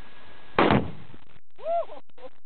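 A rifle shot sets off a tannerite-filled keg: a single loud, sudden boom about half a second in, with a short rumble trailing after it.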